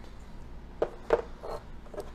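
A few short clicks and light knocks, the loudest about a second in, as a small plastic plug-in nightlight with an agate slice clipped on is handled and set down on a table.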